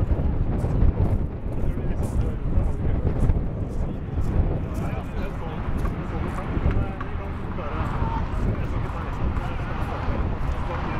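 Wind buffeting the camera microphone in a steady low rumble, with faint shouts of football players on the pitch coming through in places.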